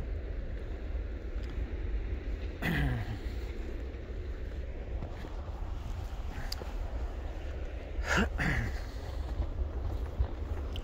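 Wind buffeting the microphone in a steady low rumble. A person's voice makes two short murmurs, one about three seconds in and one near eight seconds, the first falling in pitch.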